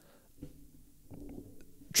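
Pause in a man's speech at a close microphone: a few faint mouth clicks, then a quiet, low murmur from about halfway through before speech resumes.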